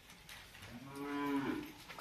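A cow mooing once, a steady call about a second long, somewhat faint.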